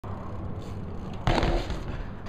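BMX bike tyres rolling on concrete, then about a second in a loud clattering impact lasting about half a second as the rider's feet and bike come down hard on a failed barspin.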